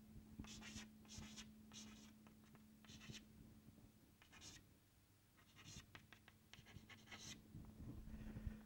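Chalk writing on a chalkboard: a faint, irregular series of short taps and scratches as letters are written one after another.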